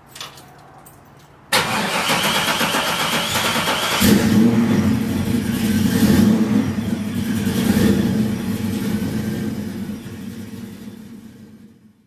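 A 1966 Chevrolet Chevelle's engine being started: the starter cranks for about two and a half seconds, then the engine catches about four seconds in and runs, swelling a little a couple of times as it is revved lightly, before fading out near the end.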